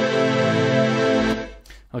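Chorded synth pad from Native Instruments Massive, with chorus and reverb on, sustaining one steady chord without sidechain pumping. It fades out about a second and a half in.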